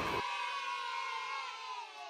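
An edited-in sound effect: a held, many-voiced sound that slowly slides down in pitch and fades away.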